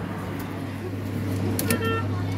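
Steady low electrical hum from a coin-operated kiddie ride, with a short electronic tone near the end.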